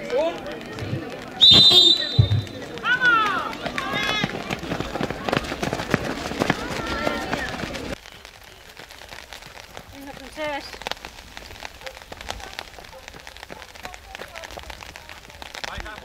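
A sudden sharp start signal with a high ringing tone about one and a half seconds in, then spectators cheering and shouting as the race gets under way. About halfway through the sound drops to quieter outdoor ambience with a few distant voices.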